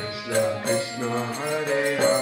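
Harmonium playing sustained notes under a man's voice chanting a mantra in kirtan style, the melody moving up and down.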